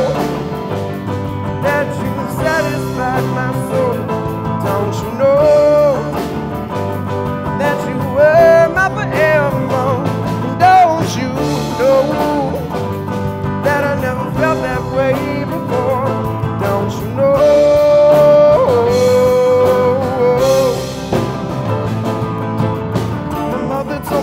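Live rock band with electric guitar, bass guitar and piano playing a passage with no lyrics, a steady bass line underneath and a melody on top that bends and slides in pitch.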